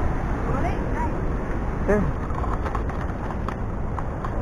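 Heavy ocean surf breaking against the shore below, a steady roar of crashing waves.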